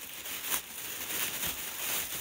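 A takeaway food bag being opened: rustling and crinkling, with a sharp crackle about half a second in and a few lighter ones after.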